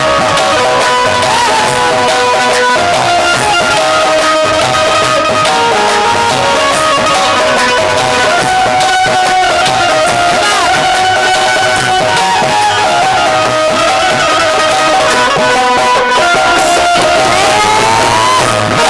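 Instrumental interlude of a live Hindi devotional bhajan: a sustained melodic lead line over drums and percussion, without singing.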